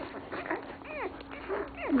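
Newborn Dalmatian puppies squeaking while they nurse: a short high squeak about a second in and another near the end, each falling in pitch.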